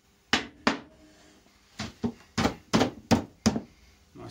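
A small hammer knocking on timber, tapping glued wooden frame pieces down into place: about eight sharp knocks, two early and then a quicker run of six in the second half.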